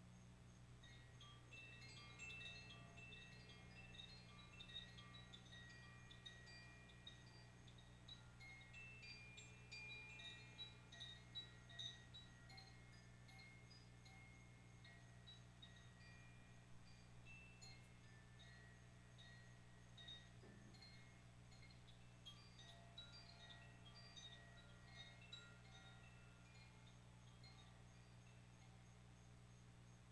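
Hanging chimes brushed by hand, a faint, continuous tinkle of many small high ringing notes, thickest in the first half, thinning out, then another flurry near the end. A faint steady low hum lies underneath.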